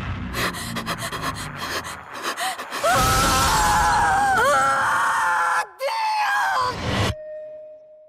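A rapid flurry of crashing and banging hits, then a woman's long, loud, high-pitched scream lasting about four seconds. It cuts off into a single ringing tone that fades away.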